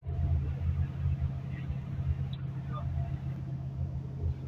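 Steady low drone inside an intercity coach's cabin, from the bus's engine running, with a constant hum underneath.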